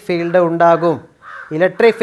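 A man lecturing, with a crow giving one short, harsh caw in a pause in the speech about a second in.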